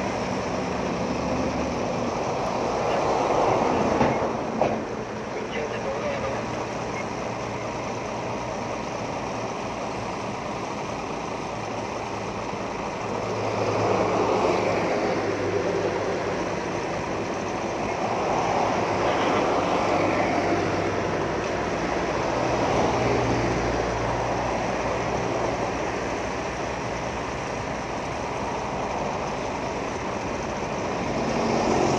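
Road traffic passing close by, vehicles going by one after another so that the noise swells and fades several times over a steady background of engine hum.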